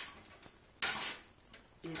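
Two brief rustling, clattering handling noises, a short one at the start and a longer one about a second in, as she picks up fallen hairs; a short spoken word at the end.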